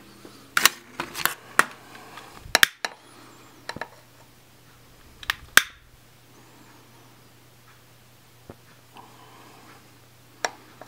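A scatter of sharp clicks and light knocks in the first six seconds, from a long-nosed butane utility lighter being clicked to light it, then quiet with a faint low hum underneath.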